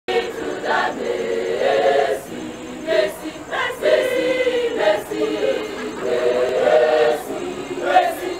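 A large choir singing together, the many voices moving in short phrases with brief breaks between lines.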